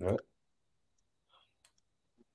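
A brief spoken syllable right at the start, then near silence with a few faint clicks about a second and a half in.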